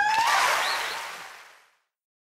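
The end of an a cappella choir song: a final sung note slides upward and breaks off. A short rush of noise follows and fades out to silence by about a second and a half.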